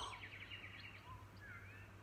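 Faint bird calls: a quick trill of repeated short notes, then a couple of brief chirps and a curved whistle near the end, over a low steady hum.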